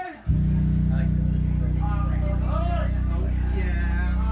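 A live band's amplified low bass note starts suddenly and holds steady at an even level, without fading. Faint voices carry over it.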